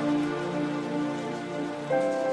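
Slow, soft instrumental background music of held chords over a faint hiss, with a new chord coming in near the end.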